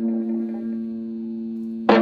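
A Höfner archtop electric guitar played through a small single-ended tube amp, a scratch-built clone of the Valco Supro Spectator with a 6SL7 preamp and a 6V6 output: one note rings on and slowly fades, then a new note is picked sharply just before the end.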